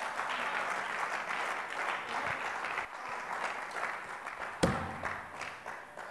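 A congregation applauding, the clapping gradually dying away, with a single sharp thump about four and a half seconds in.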